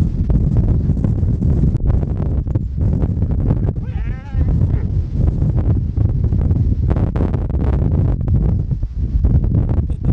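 Strong wind buffeting the microphone with a dense, steady low rumble. A calf bawls once, briefly, about four seconds in.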